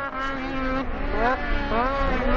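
Racing snowmobile engine revving, its pitch rising and falling several times as the sled works through a turn.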